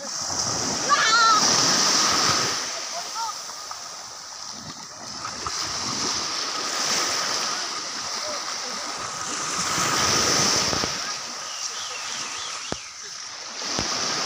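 Small sea waves washing and splashing at the shoreline, surging louder twice, with people's voices and a brief high squeal about a second in.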